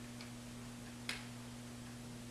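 Faint clicks and taps of a marker tip on a whiteboard, with one sharper tap about a second in, over a steady low hum.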